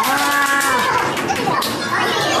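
A person's long drawn-out cheering shout, held level for most of a second and then dropping in pitch, over a noisy background of other voices and scattered clatter.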